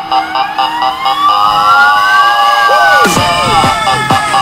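A fire engine's siren winds up in a single rising wail over about two and a half seconds, dips slightly and cuts off suddenly about three seconds in. Electronic dance music with steady synth tones runs underneath, and repeated falling sweeps follow the cut.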